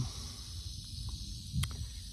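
A rattlesnake's rattle buzzing steadily, heard as a faint continuous high hiss, over a low rumble on the microphone, with one sharp click about one and a half seconds in.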